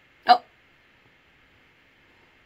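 A single short, sharp hiccup about a quarter of a second in.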